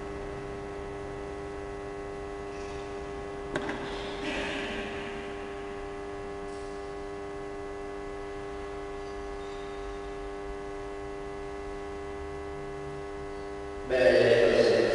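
Steady electrical mains hum, a constant buzzing drone, with a single sharp click about three and a half seconds in and a brief soft rustle just after.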